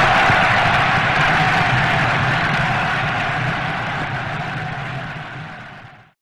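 Punk band's final distorted guitar and bass chord left ringing, fading steadily away to silence as the album ends.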